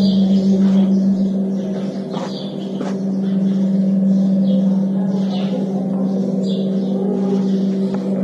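A steady low hum held on one pitch throughout, with short high chirps, like small birds, now and then.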